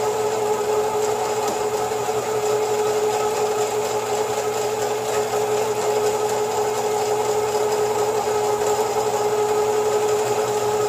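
Motorized line-spooling machine running at a constant speed with a steady hum, winding 130 lb hollow-core braid from a bulk spool onto an Avet LX Raptor reel.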